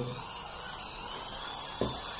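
Rewound microwave-turntable synchronous motor spun fast as a generator under the load of a 12 V bulb: a steady high-pitched whine.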